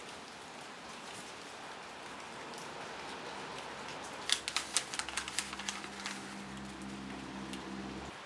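Paper envelope crackling and rustling as it is handled, a quick run of sharp crackles a little past halfway, over a quiet steady hiss. A low steady hum comes in about five seconds in.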